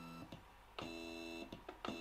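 Stepper motors of an Aufero Laser 1 diode laser engraver whining as the head makes short 10 mm jog moves: one move ends about a quarter second in, another runs from just under a second to about a second and a half, each a steady whine of several tones. A few faint clicks near the end.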